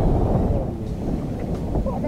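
Wind buffeting the microphone on an open boat, a steady low rumble.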